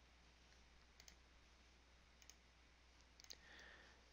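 Near silence with a few faint computer mouse clicks scattered through: one about a second in, a pair a little after two seconds and another pair just after three seconds.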